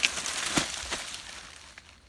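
A fallen earthen termite nest being broken apart by hand: dry crumbling and rustling with a sharp crack at the start and another about half a second in, fading out within about a second and a half.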